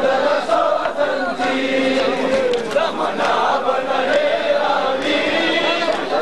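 Crowd of men chanting a Shia mourning lament (nauha) together, many voices overlapping.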